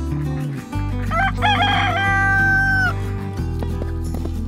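A rooster crowing once, beginning about a second in: a few short notes, then a long held note that falls off just before three seconds. Background music with steady bass notes plays under it.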